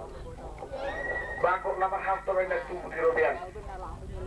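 A person's voice in phrases, its pitch wavering.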